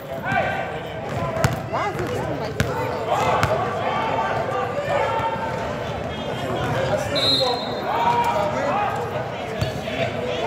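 A basketball bouncing on a gym's hardwood floor during a game, with a few sharp bounces standing out. Indistinct voices of players and spectators run through it.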